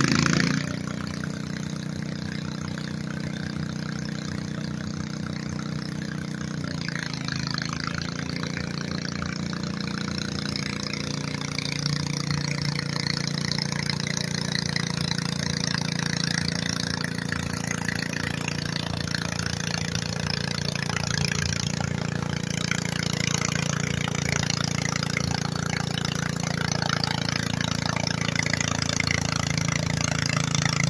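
Garden pulling tractor's engine running hard under load as it drags a weight-transfer sled, a steady engine note that dips briefly in pitch about seven seconds in and gets a little louder from about twelve seconds.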